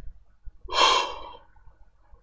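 A man's short, loud breath out through the mouth, a gasp-like huff lasting about half a second, starting just over half a second in.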